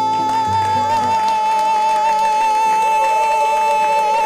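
A woman's voice holding one long high note with a gentle vibrato over acoustic guitar chords, which change twice beneath it.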